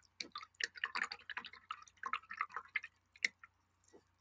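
Paintbrush being swished and tapped in a glass cup of rinse water: a quick, irregular run of small clicks and splashes.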